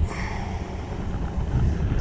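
Wind buffeting a chest-mounted GoPro's microphone, a steady low rumble, with a fainter hiss over it in the first second.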